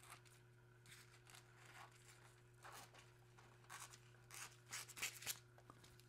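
Faint rustling and crinkling of a thin holographic toner foil sheet being handled and cut from its roll: scattered soft strokes, more frequent and a little louder in the second half, over a steady low hum.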